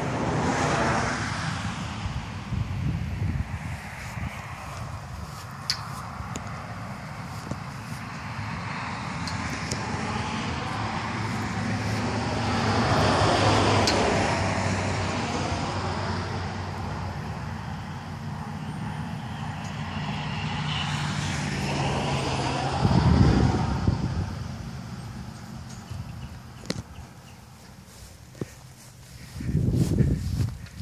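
Road traffic going by on a highway: vehicles swell past and fade, the loudest about halfway through, with a low engine hum under it and another vehicle passing about three-quarters of the way in.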